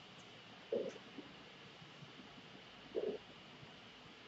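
Quiet classroom room tone with a faint steady hiss, broken by two brief low, muffled sounds, one about a second in and another about three seconds in.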